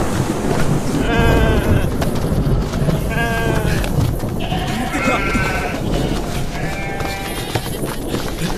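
An animal bleating four times, about two seconds apart, each call short and wavering, over a dense soundtrack of music and low rumble.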